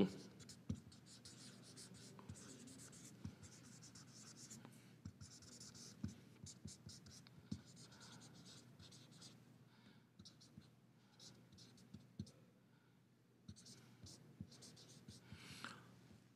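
Felt-tip marker writing on paper: faint scratching strokes and light taps as the pen moves from character to character, with short pauses between.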